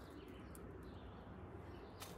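Faint outdoor background with faint bird calls.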